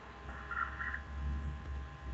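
Low steady electrical hum with faint steady tones, starting suddenly, as a second call participant's microphone opens; two faint short sounds come through it about half a second in.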